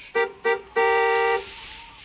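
Car horn honking: two short toots, then a longer one of about half a second, all at one steady pitch.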